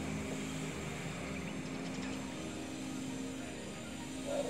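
A steady low drone of a distant engine, several even tones held without change.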